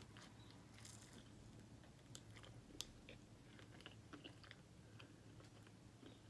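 Faint chewing of a fried cheese wonton, with scattered small clicks and mouth smacks. The wonton is chewy rather than crunchy.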